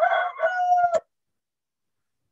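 A rooster crowing, heard over a video call. The call ends in a steady held note that cuts off suddenly about a second in.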